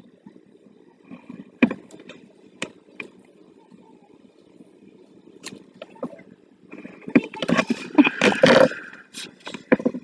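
Paper and craft tools handled on a wooden tabletop: a couple of sharp taps about two seconds in, then a few seconds of paper rustling and scraping near the end as sheets are lifted and moved for cutting.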